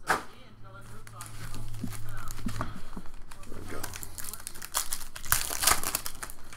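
Foil trading-card pack being torn open and crinkled by hand as the cards are pulled out, loudest in a dense burst of crinkling near the end.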